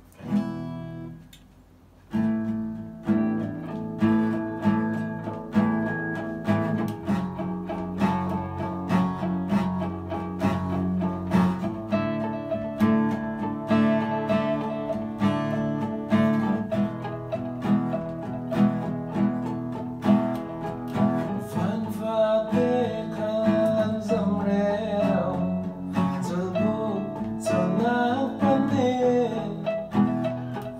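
Electro-acoustic guitar strumming chords with an electric guitar playing along. A first chord rings out and fades, then a steady strummed rhythm starts about two seconds in. Past the middle, a wavering melody line with bends comes in over it.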